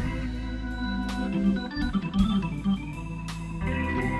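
Hammond B3 organ playing a slow minor blues, held chords and a moving line over a bass and drums, with regular cymbal strokes.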